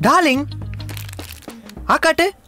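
Film dialogue over background music: a man's short exclaimed word with pitch rising then falling at the start, a low steady music drone through the middle, and speech again near the end.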